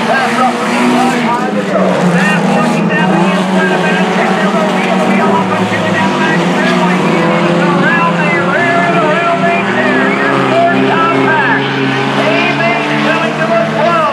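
Sport compact race cars' engines running hard around a dirt oval, a steady drone whose pitch rises and falls as they go through the turns, with people's voices mixed in.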